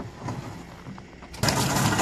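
Manual pallet jack being dragged under a heavy pallet load across gravel, its wheels grinding and crunching over the stones. The noise starts suddenly and loudly about three quarters of the way in, after a quieter stretch with a few small clicks.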